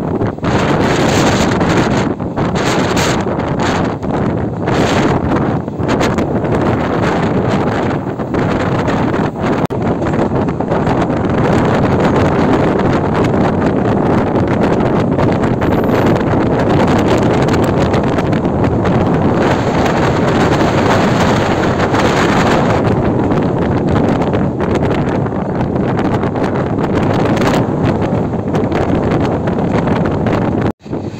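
Wind buffeting the microphone from the window of a moving passenger train, over the steady running noise of the coaches on the track.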